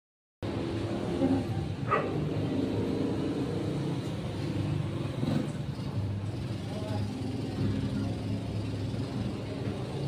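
Steady urban street noise, the low hum of passing traffic, with faint voices in the background; it starts after a brief moment of silence.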